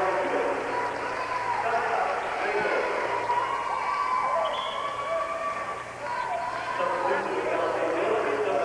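Crowd of spectators in a gymnasium, a steady hubbub of many overlapping voices talking and calling out.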